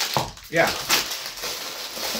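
Tissue paper and plastic sweet wrappers rustling and crinkling as packages are handled and lifted out of a cardboard box, with a brief spoken "yeah" near the start.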